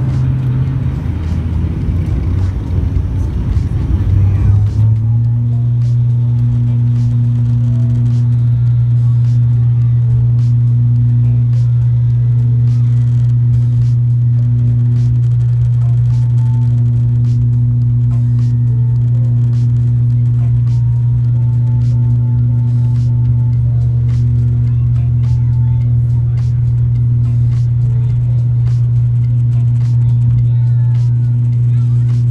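Turboprop airliner's engine and propeller running at high power as the plane rolls down the runway, heard from inside the cabin. A rough low rumble settles abruptly into one steady, even drone about five seconds in.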